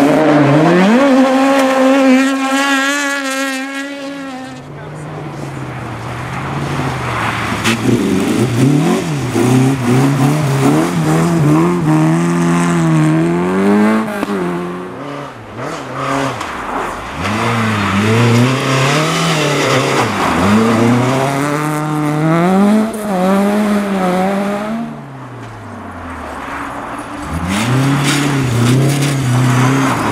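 Rally car engines on a snow stage: one car held at high revs for the first few seconds as it slides through the corner, then another car's engine revving up and down through gear changes as it approaches, rising again as it arrives near the end.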